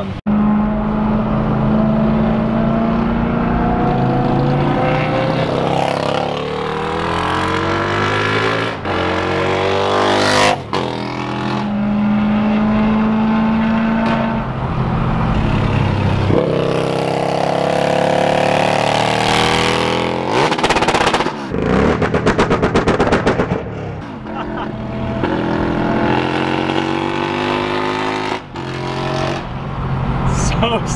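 Engines revving and accelerating hard, heard from inside a car cabin while following a sport motorcycle: repeated rising pulls with steady cruising stretches between them. About two-thirds of the way through comes a brief burst of rapid, evenly spaced pulses.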